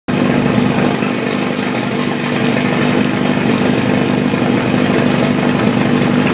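Portable fire pump engine idling steadily.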